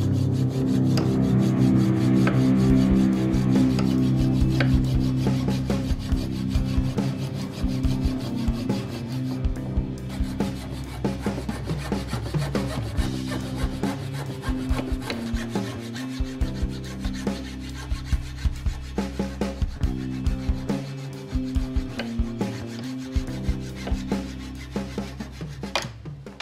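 Hand hacksaw cutting through a wooden ring blank held in a bench vise, in steady back-and-forth strokes; the wood is taken by the maker to be European beech. Background music with sustained guitar-like notes plays underneath.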